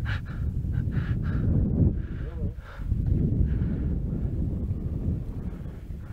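Wind noise on the camera microphone at a high exposed viewpoint: a low rumble that rises and falls, with faint voices over it.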